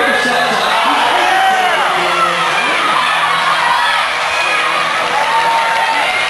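Crowd of roller derby spectators in a skating rink cheering, whooping and talking, many voices overlapping steadily, with music playing underneath.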